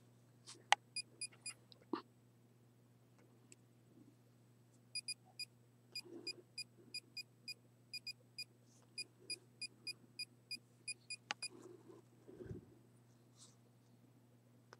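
Handheld RF and EMF meter beeping as it registers a field: short high-pitched beeps, about three a second in uneven runs, from about five seconds in until about eleven seconds. Faint handling clicks and knocks come before the beeping, and a dull thump near the end.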